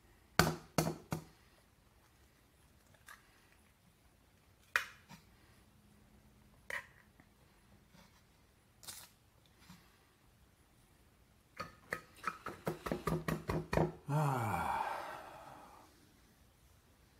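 Eggshells cracking and tapping as eggs are broken and separated by hand, a few sharp cracks spread over the first nine seconds. Then comes a quick run of about a dozen slaps of hands on a bare belly, followed by a voice sliding down in pitch for about two seconds.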